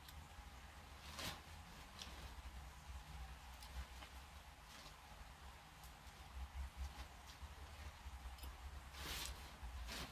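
Faint rustling and a few light clicks as a small nylon pop-up tent and its poles are handled, with a louder rustle near the end.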